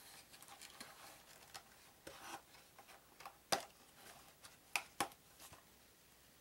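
Thin cardboard game box being handled and pulled open: faint rubbing and scraping of paperboard flaps against each other, with a few sharp taps, one about halfway through and two close together near the end.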